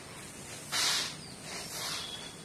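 Bare feet shuffling through grain spread out on a tarp to dry: a dry swishing rustle, loudest about three-quarters of a second in, with softer swishes after.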